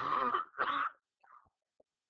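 A person coughing twice in quick succession, each cough about half a second long.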